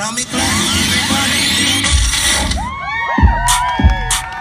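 Hip-hop dance mix playing loud over speakers at a break in the track: a dense hissing wash with sweeping high tones for the first two and a half seconds, then gliding tones and a few deep booms.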